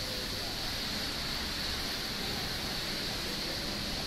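Steady background noise of a busy outdoor city forecourt, an even hiss with faint distant voices.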